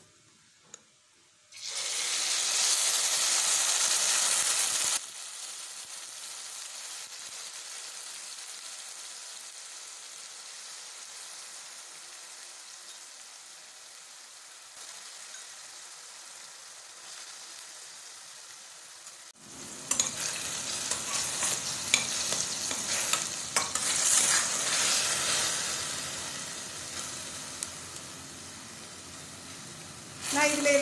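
Hot oil sizzling in a stainless steel pressure cooker as whole spices and then chopped onions fry, a steady hiss that jumps in level a few times. In the last ten seconds a steel spoon stirs the onions, adding irregular scraping and clinks against the pot.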